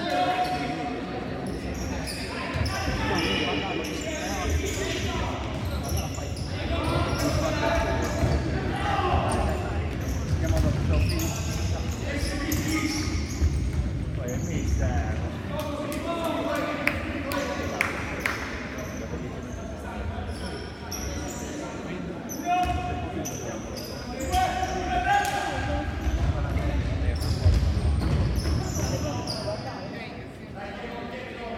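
A futsal ball being kicked and bouncing on a wooden sports-hall floor, the knocks coming irregularly throughout and echoing in the large hall, with voices calling out over the play.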